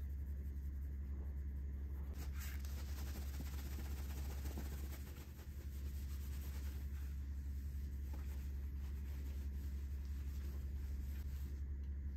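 Faint scratchy rubbing of a microfiber towel being wiped over the hard plastic surface of a 3D-printed mask, under a steady low hum.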